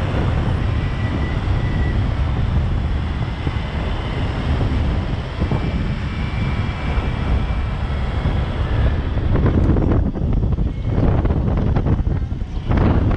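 Vehicle driving over a sandy track, a steady low rumble of engine and tyres under wind rushing over the microphone; the wind comes in harder, uneven gusts near the end.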